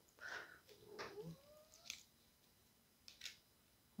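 Near silence with a faint cat meow about a second in, rising in pitch, and a few soft clicks of cards being handled and laid down.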